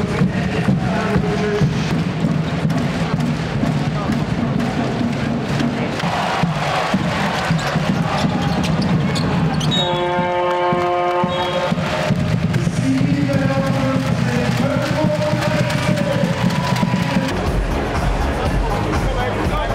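Basketball arena sound: crowd noise and chanting mixed with music, and a basketball bouncing on the court. About ten seconds in, a steady horn sounds for about a second and a half.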